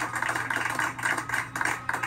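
A small group of people clapping: many quick, uneven claps over a steady low hum.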